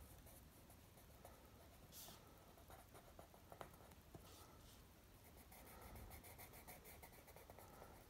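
Faint, intermittent scratching of a coloured pencil shading on paper.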